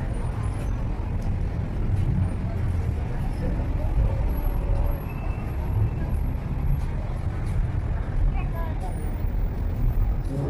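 Outdoor night-market crowd ambience: indistinct chatter of shoppers over a steady low rumble.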